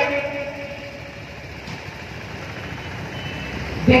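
A pause in a woman's speech through a microphone: her voice trails off at the start, steady outdoor background noise fills the gap, and her voice comes back right at the end.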